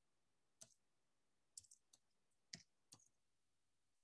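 Faint computer keyboard keystrokes: a handful of short, irregular clicks as a word is typed.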